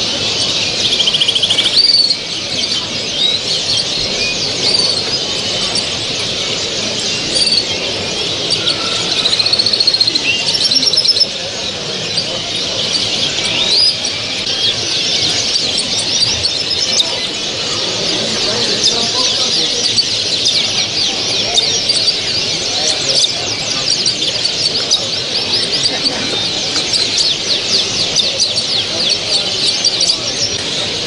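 Many caged show songbirds (canaries, goldfinches and goldfinch hybrids) singing and chirping at once: a dense, continuous chorus of overlapping trills and twitters, with no single song standing out.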